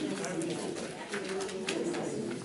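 Low, indistinct talk in a small room, with soft rustles and clicks of paper ballot slips being handled and counted.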